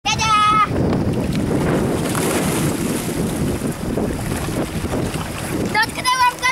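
A child's short high-pitched call at the start, then several seconds of wind rumbling on the microphone by the sea, and children's high voices again near the end.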